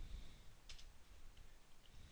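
Faint typing on a computer keyboard: a few soft keystrokes, the clearest a little under a second in.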